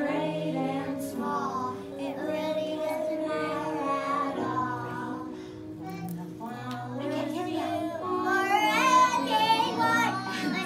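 A group of preschool children singing a song together, with music playing along; the singing grows louder near the end.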